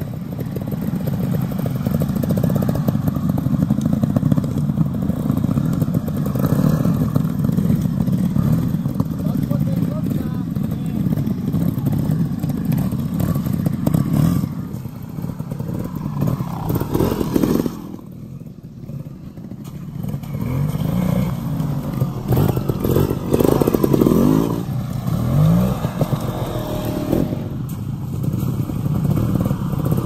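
Trials motorcycle engines running at low revs as the bikes pick their way over rough ground, with a few quick throttle blips in the second half and a brief lull partway through.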